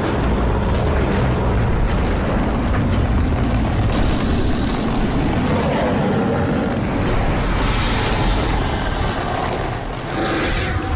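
A loud, steady, deep rumbling sound effect of a colossal rock-bodied titan ape rising, without a break.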